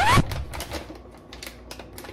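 A hand rummaging in a plastic bag of M&Ms: the bag crinkling and the small candy-coated chocolates clicking against one another in a light scatter of clicks.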